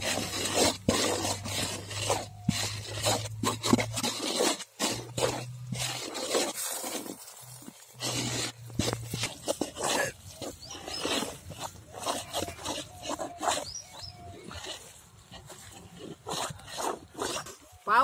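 A wooden stick pounding and mashing syrup-soaked boondi in a large aluminium pot, giving repeated irregular knocks, with voices talking alongside.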